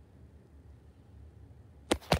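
A quiet, steady low hum, then a single sharp knock just before the end.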